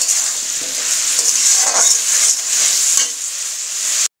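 Shredded cabbage and potatoes sizzling as they fry in a metal kadai, with a steady hiss. A steel spatula scrapes now and then as it stirs them.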